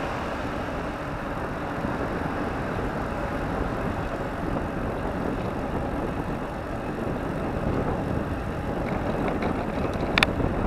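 Steady wind rush on the microphone of a camera riding on a moving bicycle, with a few light clicks near the end.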